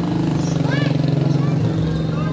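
A motor vehicle engine running steadily close by, loudest in the middle, with a few short high-pitched calls over it.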